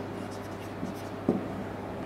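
Marker pen writing on a whiteboard: soft scratching strokes as words are written out.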